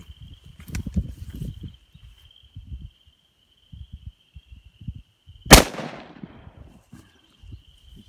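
A single shot from a .500 Magnum revolver about five and a half seconds in: one sharp, very loud crack with a tail that dies away over about a second.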